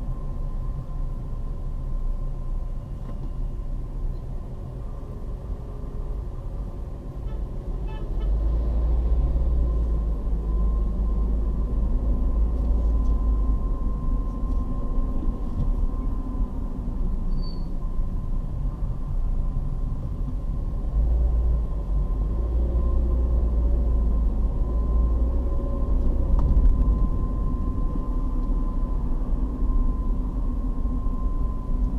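Car driving, heard from inside the cabin: a steady low engine and road rumble that grows louder about eight seconds in, with a faint steady high tone running through it.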